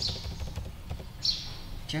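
A few faint computer keyboard keystrokes as text is deleted from a search box, with a short hiss just past a second in, over a low steady background noise.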